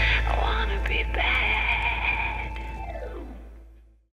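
Trailer sound design: a deep bass boom that hangs on under a whispered, echoing voice, then a held eerie high tone. It all fades away over the last second or so.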